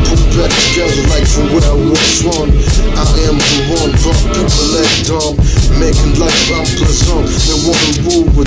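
A hip hop track playing: a drum beat with a rapped vocal over it.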